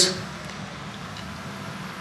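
A pause between a man's sentences, filled with low steady background hum; the tail of his last word fades out at the very start.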